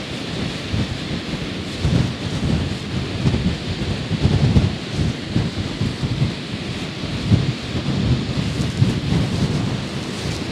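Strong wind buffeting the microphone, irregular low rumbling gusts over a steady hiss.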